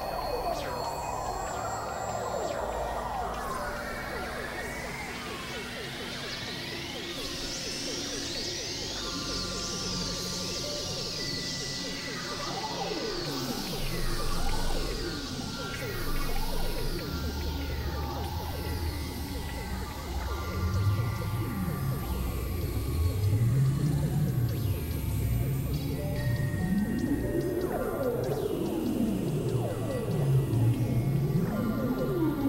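Experimental electronic synthesizer music: held drones and tones under many pitch glides that sweep up and down in arcs. About two-thirds of the way through, deep tones begin swooping up and down and the music grows louder.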